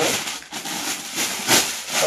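Close rustling of net fabric as embroidered lehenga pieces are handled and spread out, starting abruptly, with a louder swish about one and a half seconds in.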